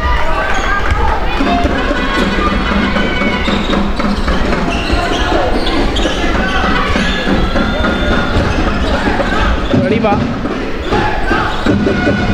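A basketball being dribbled on a hardwood court during live play, with many voices in the hall around it.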